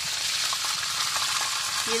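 Whole mojarra fish frying in hot oil in a pan, a steady sizzle, with a few light clicks of a metal spatula and spoon against the pan as the fish are worked loose.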